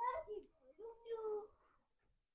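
A cat meowing twice, the second meow longer and falling in pitch.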